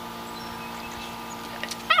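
Steady low background hum, then two faint snips of scissors cutting hair, followed near the end by a sharp, high-pitched "Ow!" from the person having her hair cut.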